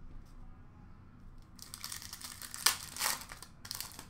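Foil wrapper of a hockey card pack being torn open and crinkled, starting about a second and a half in, with a sharp snap near the middle.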